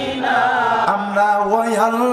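A man's voice chanting a sermon refrain in the sung style of a Bangla waz, in long held notes that bend up and down.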